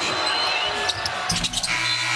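Live basketball game sound: the ball knocking on the rim and hardwood court and sneakers squeaking as play restarts after a free throw, with a cluster of sharp knocks about a second in over steady arena crowd noise.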